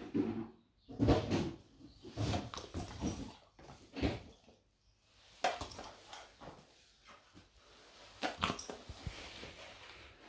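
Vizsla dog vocalizing, a string of short, uneven calls with pauses between them, begging for more dried banana treats.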